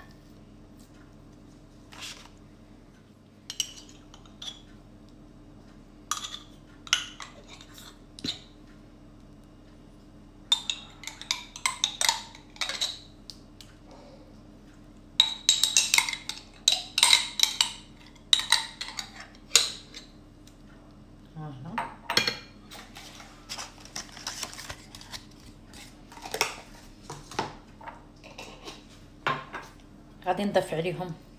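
Kitchen utensils clinking and scraping against a glass mixing bowl and dishes, in irregular clusters of short clatter. A faint steady hum runs beneath.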